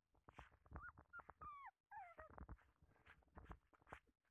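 Faint puppy whimpers: a few short high cries that slide up and down, among soft clicks.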